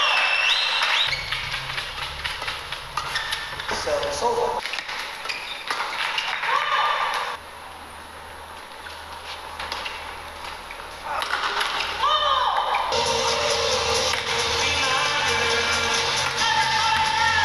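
Badminton rally: rackets striking the shuttlecock in quick clicks, and players' court shoes squeaking in short gliding chirps on the court mat, with crowd noise from the hall. It drops suddenly quieter for a few seconds in the middle, then comes back up.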